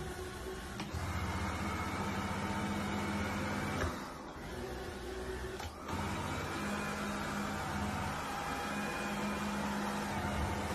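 Robot vacuum cleaner running, a steady motor hum that drops lower for about two seconds in the middle.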